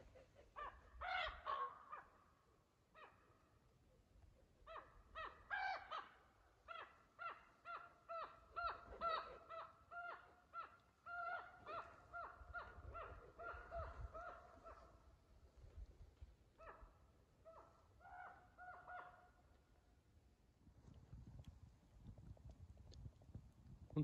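Birds calling: a long series of short calls, all on much the same pitch, coming two or three a second. There is a brief pause about two seconds in, and the calls thin out and stop a few seconds before the end.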